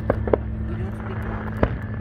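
Distant aerial fireworks bursting: two sharp bangs near the start and a louder one about a second and a half in, over a steady low hum.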